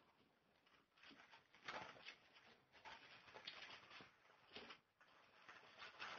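Near silence with a few faint, brief rustles of thin Bible pages being turned.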